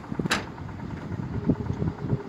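Footsteps on the wooden plank walkway of a steel railway bridge, a few soft knocks spaced irregularly, over a low steady rumble.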